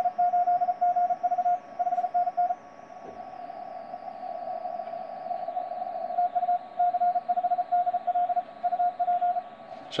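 Morse code (CW) from a Yaesu FT-991 transceiver's speaker, the C5DL station's signal on the 15-metre band: a single pitched tone keyed in fast dots and dashes over steady receiver hiss, which the narrow 150 Hz filter makes sound ringing. The keying comes in two bursts, with a pause of about three and a half seconds between them.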